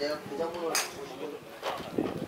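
Men talking, with two sharp clicks about a second apart.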